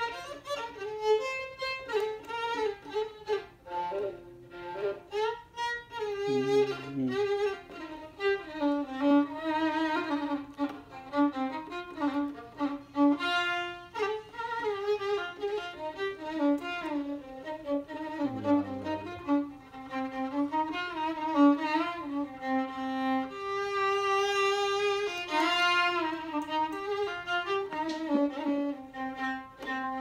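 Solo violin playing the melody of an Arabic song, with vibrato on held notes and slides between notes.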